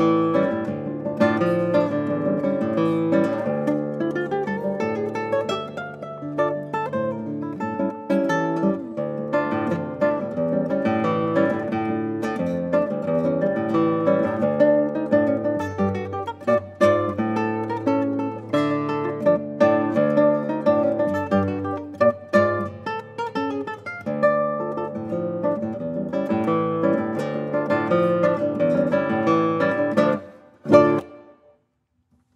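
Solo nylon-string classical guitar played fingerstyle: quick plucked melody notes over a moving bass line, continuous throughout.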